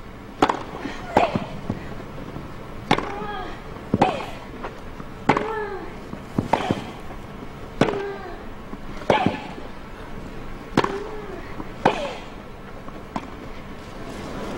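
Tennis rally: about ten racquet strokes on the ball, a little over a second apart. Most strokes come with a short grunt from the hitting player that falls in pitch.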